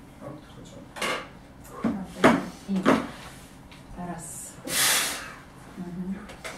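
A few sharp knocks and thuds from bodies shifting on a padded exercise bench during an assisted exercise, about one to three seconds in. A long rushing hiss follows near the end.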